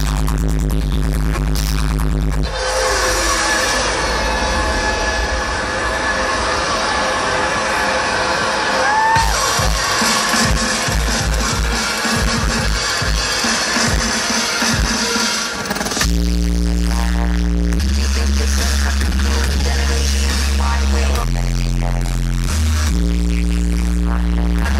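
Live electronic music played loud over a concert PA and recorded from within the crowd. A heavy, stepping bass line drops out after about two seconds, giving way to a noisy, hissing build with a run of sharp drum hits. The bass returns about two-thirds of the way through.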